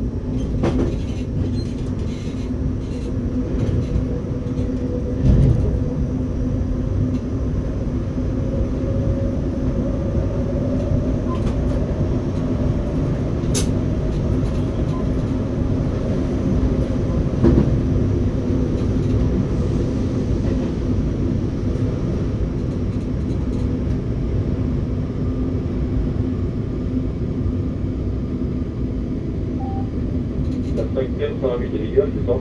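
RER B electric suburban train heard from the driver's cab, running along the track with a steady low rumble and a constant motor hum. A couple of louder knocks come about five and seventeen seconds in, from the wheels crossing track joints as the train approaches a station stop.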